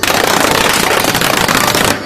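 Electric blender running at full speed to mix a shake: a loud, steady whir that cuts in suddenly and stops just as suddenly.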